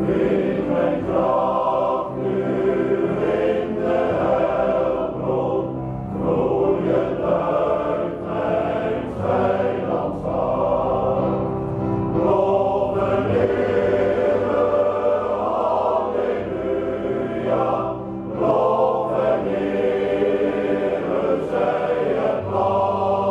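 Male choir singing in parts, in phrases of a few seconds each with short breaks between them.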